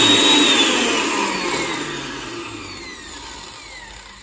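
Hannover 4-in-1 food processor's motor spinning the empty spice-grinder jar's blades on the pulse button, then released: a loud whir that winds down, falling in pitch and fading as the blades coast to a stop.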